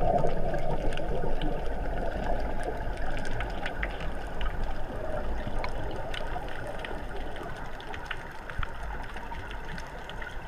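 Underwater water noise during a freedive descent: a steady rush of water and bubbles with scattered faint ticks, slowly getting quieter.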